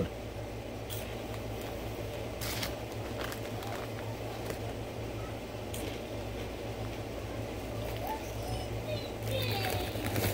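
A few faint crunches of a man chewing a crunchy corn-and-potato snack over a steady low room hum.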